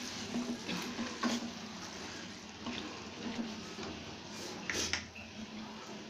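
Wooden spatula stirring soaked lentils through a wet spinach-tomato masala in an aluminium pressure cooker: soft, irregular scrapes against the pot over a low, steady hiss.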